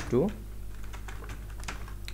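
A few separate keystrokes on a computer keyboard as a short word is typed.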